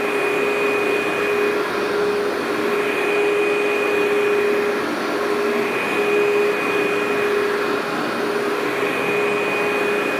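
Workhorse upright vacuum running steadily as it is pushed back and forth over low-level commercial loop carpet, pulling fine dry soil out of it. A steady motor hum with a higher whine that comes and goes.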